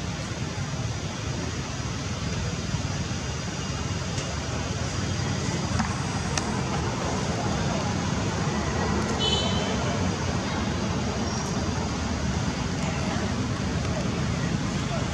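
Steady outdoor background noise, a low rumble with faint voices mixed in, and a short high chirp about nine seconds in.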